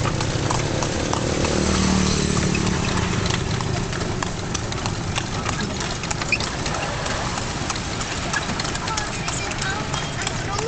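A horse's hooves clip-clopping on asphalt as it pulls an andong, a Javanese horse-drawn carriage. A low engine hum runs under the hoofbeats for the first few seconds and then fades.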